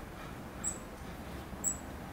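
Black-capped chickadee giving two very short, high-pitched calls about a second apart, over steady low background noise.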